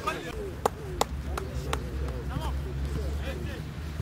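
Distant shouts of players on a football pitch, with four sharp clicks or knocks about a third of a second apart in the first two seconds, and a low wind rumble on the microphone.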